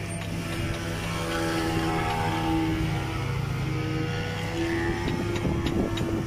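A wooden fishing boat's engine running steadily under way, with an on-and-off whine over it.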